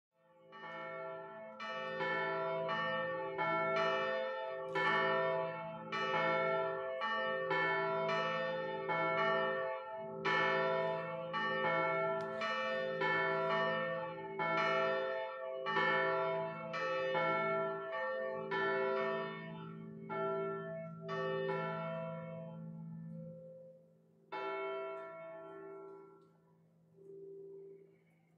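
Church bells ringing a run of notes, about two strikes a second, each left to ring on. The run fades out shortly before the end, and one new note sounds near the end.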